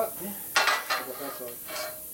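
Steel rotary-table frame and perforated steel turntable of a bead blaster clanking against each other as they are shifted: a cluster of metal knocks with short ringing about half a second in, and another near the end.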